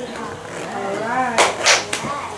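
A child's voice speaking a short phrase in Garifuna, with two sharp hissing consonants near the end.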